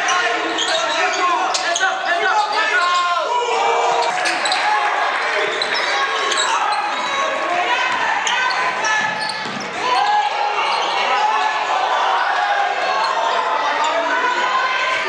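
Basketball game play on a gym floor: the ball bouncing on the hardwood amid shouting voices of players and spectators, echoing in the large hall.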